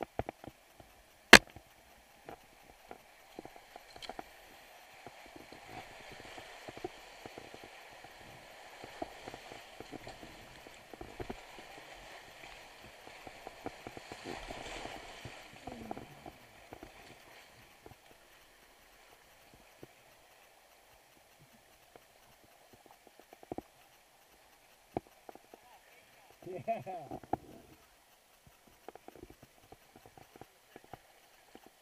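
Kayak moving through a creek riffle: water rushing past the boat for several seconds, with many scattered ticks and knocks of paddle strokes and splashes on the boat, one sharp knock about a second in. A voice says "yeah" near the end.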